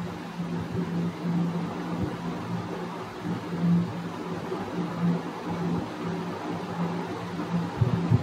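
Steady low hum with a faint hiss: background room noise on the microphone while the narrator is silent.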